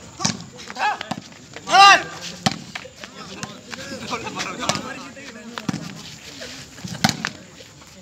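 Players shouting during a shooting-volleyball rally, the loudest call about two seconds in. Between the shouts come several sharp slaps of hands striking the ball.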